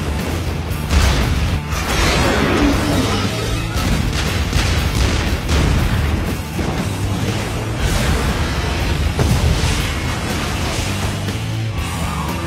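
Action-film soundtrack: loud music mixed with the booms of a battleship's big guns firing and shells exploding, with sharp peaks about a second in and again near nine seconds.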